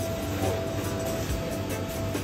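Background music with long held notes over a steady low hum.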